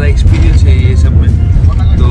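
A man talking over the steady deep rumble of a bus cabin, the low drone of engine and road noise running under his voice.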